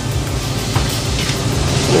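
Bean sprouts and ground meat stir-frying in a heavy stone-coated frying pan with a steady sizzling hiss, a wooden spatula stirring and scraping through them; background music plays underneath.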